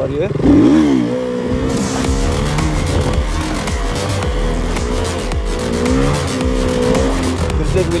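Motorcycle engine revved sharply as the front wheel is lifted into a wheelie, then held at high revs that rise and fall slightly with the throttle. Background music with a beat runs underneath.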